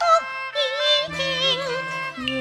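Female Cantonese opera singer singing a melodic line with a wide, wavering vibrato, over a traditional Chinese instrumental accompaniment.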